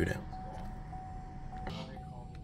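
Quiet room tone with a faint, steady high-pitched tone running through it, and one brief soft noise near the end.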